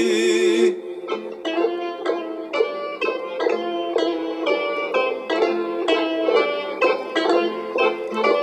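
Instrumental break in a Greek folk-style song: a bouzouki plucks a melody of quick, separate notes, about three a second. A held sung note ends a little under a second in.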